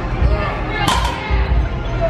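A loaded barbell set down onto lifting blocks, one sharp clank of the plates landing a little under a second in, over background music with a steady low beat.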